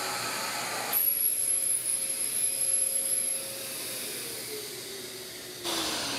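Shaper Origin handheld CNC router finishing an inside cut in wood. The broad cutting noise drops away about a second in, leaving a high spindle whine, and then the motor winds down with a slowly falling pitch.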